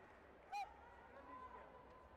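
A single short shouted call, brief and pitched, about half a second in, over faint sports-hall background.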